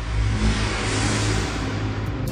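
Intro sound effect for an animated channel logo: a swelling whoosh riser over a low sustained drone, building to a peak about halfway through.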